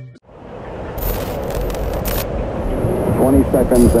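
The music cuts off and a low rumbling noise swells up in its place. Near the end a voice announces "ignition sequence", a launch-countdown line that opens the next music track.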